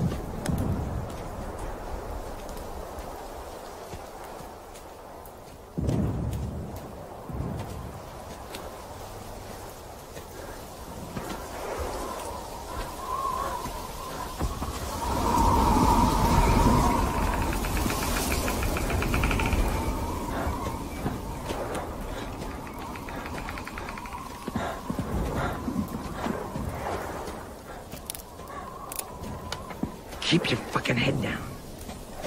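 Deep booms and rumbling: a sudden boom about six seconds in and a longer, louder rumble around the middle, with a steady high tone held through the second half.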